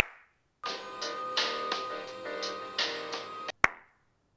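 A single hand clap with a short room echo, then background music with a repeated beat for about three seconds, then another hand clap near the end. The claps are tests of each room's acoustics before voice recording.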